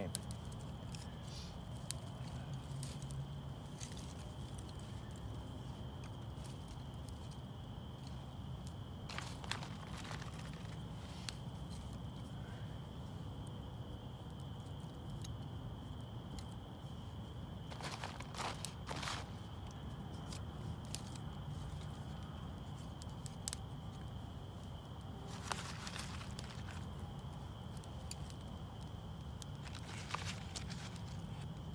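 Small fire of damp kindling sticks crackling in an earthen fireplace pit. Sticks are handled and snapped, with clusters of sharp crackling and snapping about ten seconds in, near nineteen seconds and about twenty-six seconds in.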